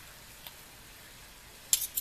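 Metal forks clicking against the slow cooker's crock while shredding cooked pork: a faint tick about half a second in and a quick cluster of clicks near the end.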